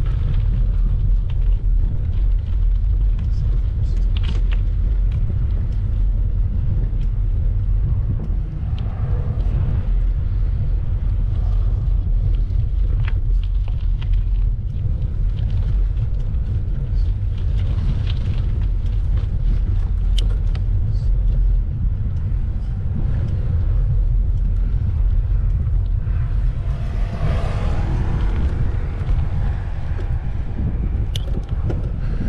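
Steady low rumble of wind buffeting the microphone, with tyres rolling over a rough dirt road, from a moving bicycle.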